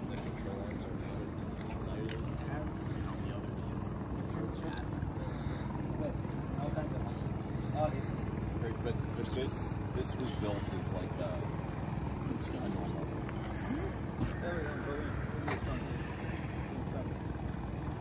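A steady low drone, like an engine running at a distance, with faint voices talking.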